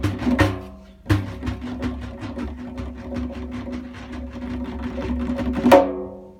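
Two tombaks (Persian goblet drums) played in improvisation: a few strokes, a short pause about a second in, then a fast, even run of strokes like a roll with the drums' pitch ringing under it. It ends on one loud accented stroke near the end and fades quickly.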